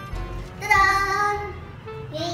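Background music, with a child's voice calling out one high, drawn-out note about half a second in.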